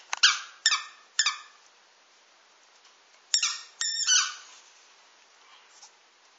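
An orange rubber squeaky ball squeaking as a border collie chews it, in two bursts of short squeaks: three in the first second and a half, then two or three more about three to four seconds in.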